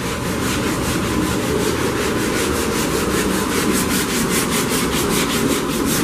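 Sanding on the body of a 1984 Chevrolet Monte Carlo: a steady scrubbing rasp with a fast, even pulse, taking the paint down to the original colour underneath.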